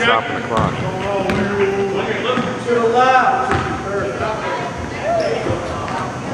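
A basketball bouncing on a hardwood gym floor as a player dribbles, several irregular bounces, with players and spectators shouting and calling out in the echoing gym.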